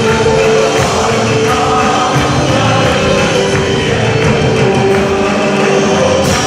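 Live band playing a loud worship song with voices singing: keyboards and drums.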